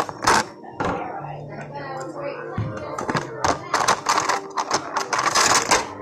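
Barber's tools and items being picked up and handled on a counter: a run of clicks and knocks, crowding together in the second half, with a short low hum about a second in.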